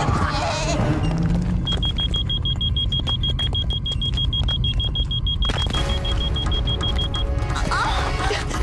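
Dramatic TV background score: a low rumbling bed with a rapid high-pitched beeping tone that pulses about eight times a second from about two seconds in until near the end.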